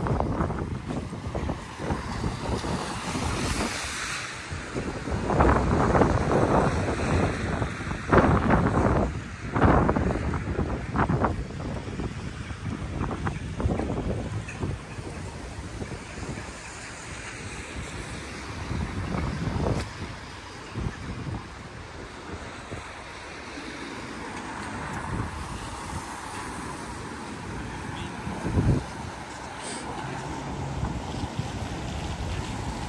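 Wind buffeting the microphone in irregular gusts, loudest in the first ten seconds, then a lower steady rush with one short gust near the end.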